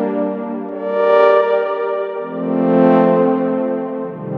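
Techno synth horn, an Ableton Wavetable saw-wave patch with reverb, playing sustained chords. Each chord swells in slowly on a long attack, giving a bowed feel; new chords come in about a second in and a little after two seconds.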